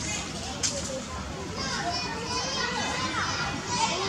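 Macaques screeching: a run of high, wavering, overlapping squeals starting about a second and a half in, over a background of outdoor noise.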